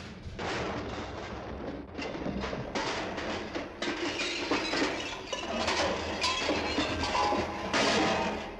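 Studio audience applauding, the dense clapping growing louder about halfway through.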